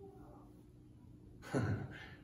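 Quiet room tone, then a sudden loud sigh about one and a half seconds in.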